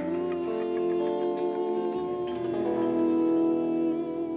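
Electric guitars playing an instrumental rock passage, holding long sustained notes and chords without vocals.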